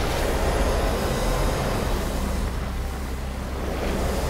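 Steady rumbling, hissing ambient sound effect: the sound design for a glowing pool of lightning, with no distinct strikes or rhythm.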